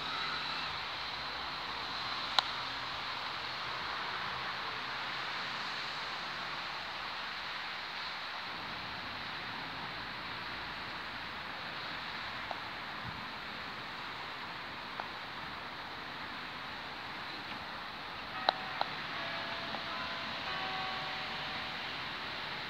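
Croquet mallet striking balls: one sharp knock about two seconds in and two knocks in quick succession near the end, over a steady outdoor hiss.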